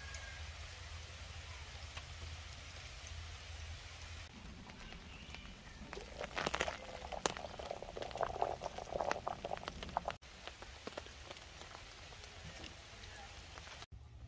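Steady rain falling, then from about four seconds in, water boiling hard in a stainless steel pot on a portable gas camp stove, bubbling and popping; this is the loudest part. After about ten seconds the rain is heard alone again.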